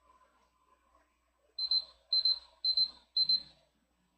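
Electronic timer alarm beeping: four short, high-pitched beeps about half a second apart, starting about halfway through, marking the end of a timed exercise.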